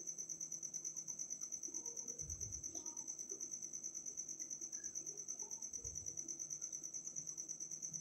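Wire whisk beating eggs and milk in a glass bowl: quiet, quick, even strokes, several a second, with a faint steady high-pitched whine beneath.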